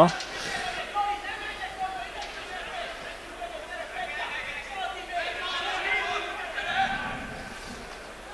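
Distant shouting and calling voices from an open football pitch and its stands, heard faintly through the broadcast's field microphones.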